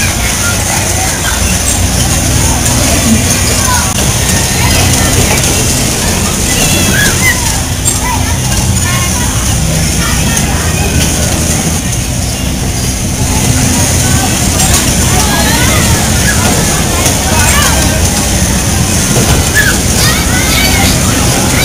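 Bumper car ride running: a loud, steady din of the cars' low hum and rolling on the rink floor, mixed with a babble of riders' and onlookers' voices.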